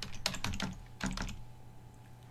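Keystrokes on a computer keyboard: a quick run of about half a dozen clicks in the first second and a half, then they stop.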